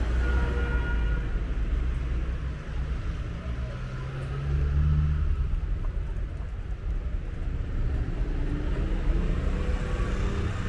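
Street traffic: car engines passing close by, a steady low rumble that swells near the start and again about five seconds in.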